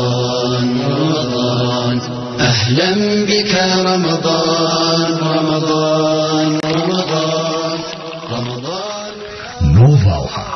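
A man's voice chanting in long held notes that glide slowly from one pitch to the next, with a louder rising phrase near the end.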